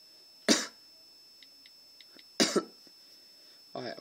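A person coughing: one short cough about half a second in, then a double cough at about two and a half seconds.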